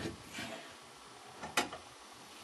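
Faint handling noises: a brief soft scrape, then a single sharp click a little past one and a half seconds in.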